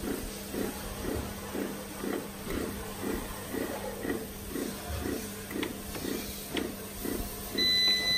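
Siroca bread maker's kneading motor running with the pan empty: a low hum with a rhythmic thrum about three times a second as the paddle turns. Near the end the machine gives a long electronic beep as it is stopped.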